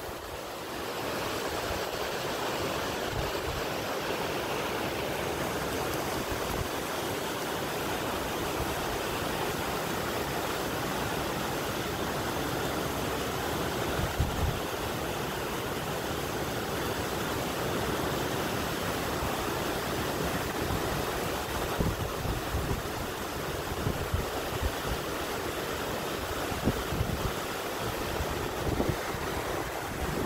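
Waterfall and its rocky creek rushing steadily, a little louder about a second in. A few low bumps of wind on the microphone in the second half.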